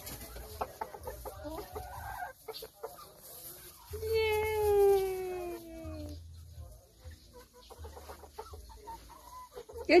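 Rhode Island Red chickens clucking in short scattered calls, then about four seconds in one long call that falls steadily in pitch over about two seconds, the loudest sound here.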